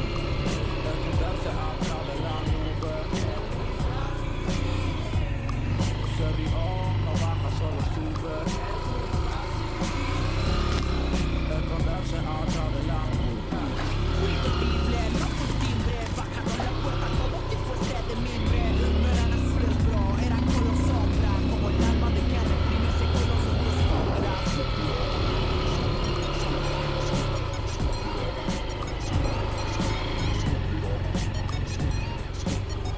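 Small motorcycle engine running on a dirt trail, its pitch rising and falling as the throttle changes, under background music with singing and a steady beat.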